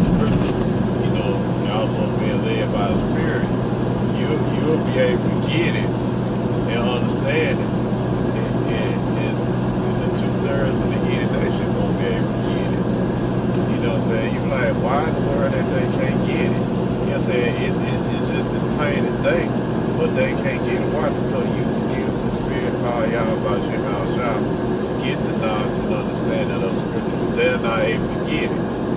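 Steady road and engine drone heard inside the cabin of a moving car at road speed, with faint indistinct voice in the background.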